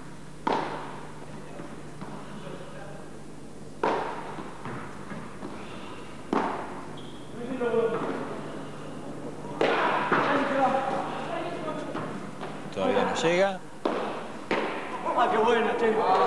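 A padel rally: three sharp hits of the ball, about half a second, four and six seconds in, each with a short ring in the hall. Voices come in from about ten seconds in.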